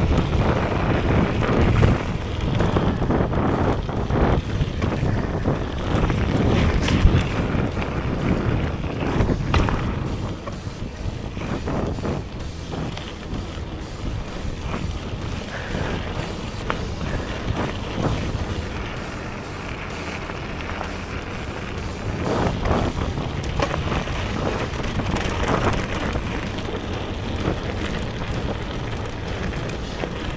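Wind buffeting the action-camera microphone and a full-suspension mountain bike's tyres rumbling over a gravel track, with scattered knocks and rattles from bumps. Louder for the first ten seconds or so, then quieter, with background music.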